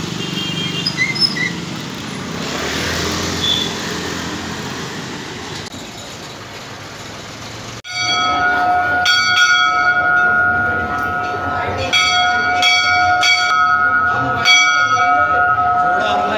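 Street noise for about eight seconds, then an abrupt change to temple bells being struck over and over at an uneven pace, their tones ringing on steadily between strikes, over the murmur of a crowd.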